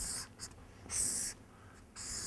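Marker pen drawing strokes on flip-chart paper: two short scratchy strokes, one at the start and one about a second in.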